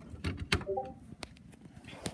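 Clicks and knocks of an aux cord plug being handled and pushed into a TV's audio-in socket, the sharpest click about half a second in. A brief tone sounds just after it.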